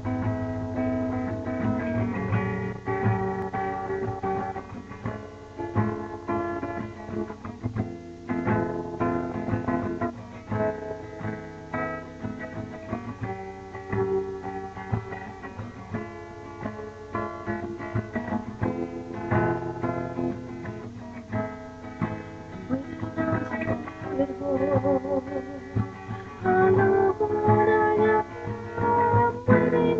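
Acoustic guitar playing the chords of a song's introduction, with no voice through most of it. Near the end a woman's voice comes in, singing.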